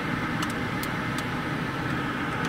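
Steady car engine idling, heard from inside the cabin while the car waits in traffic, with a few faint light ticks.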